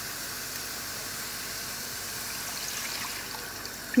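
Water poured steadily from a hammered copper mug into a steel pan of fried onion-tomato masala, the first of several cups added to make a thin curry gravy.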